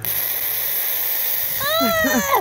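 Silly string aerosol can spraying in a steady hiss that starts suddenly, joined near the end by a high-pitched yell.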